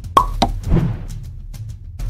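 Cartoon pop sound effects from an animated end card: two quick pops in the first half-second, then a louder short swell, over background music.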